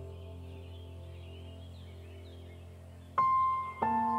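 Background music of soft held notes, with two new notes struck sharply just past three seconds in.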